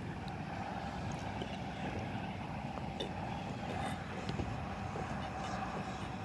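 Quiet swallowing from a plastic juice bottle over a steady low rumble with a faint hum.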